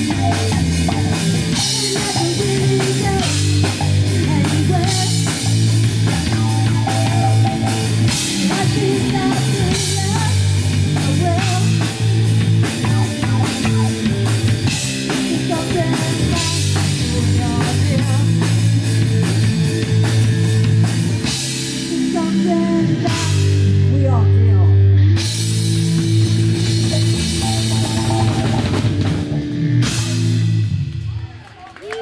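A live rock band playing: drum kit, electric guitars and bass guitar in a steady, driving groove. The cymbals drop out for a couple of seconds near the end, then the band comes back in.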